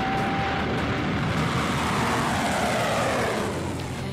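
A broadcast transition sound effect: a long rushing whoosh of noise that swells and arches over a few seconds, then eases off near the end.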